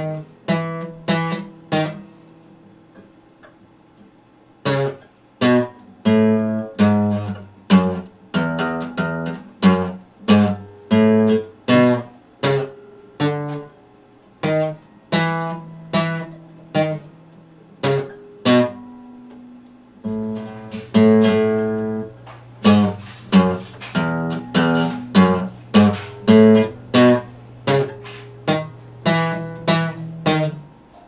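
Epiphone dreadnought acoustic guitar played solo, single notes and chords picked in a slow, halting line, with pauses where the notes ring out. From about two-thirds of the way through, a low bass note is held under the picked notes.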